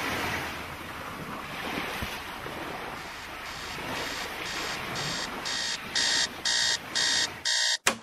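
Ocean surf washing up on a beach, joined a little over three seconds in by an alarm clock beeping about two to three times a second. The beeping grows louder and stops abruptly just before the end.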